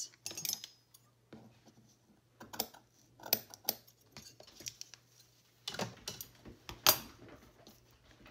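Metal scissors snipping lace and being handled: scattered sharp clicks in two clusters, from about two and a half seconds in and again from about six seconds in, the loudest near the end.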